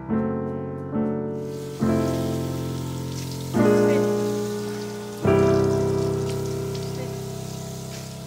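Soft piano music, five chords each struck and left to fade, over the hiss of a bathroom tap running into a sink. The water begins about a second and a half in.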